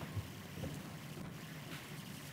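Quiet room tone in a meeting hall, with a few faint, soft footsteps as a man walks up to a lectern.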